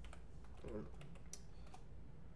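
Keystrokes on a computer keyboard: about eight sharp, irregular clicks as letters are typed into the crossword grid.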